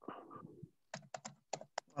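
Computer keyboard typing: a quick run of about eight keystrokes starting about a second in, after a brief soft sound at the start.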